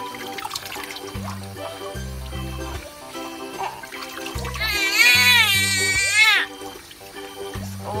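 A newborn baby crying, one loud wavering wail lasting about two seconds in the middle, over background music with a steady bass line and faint running tap water.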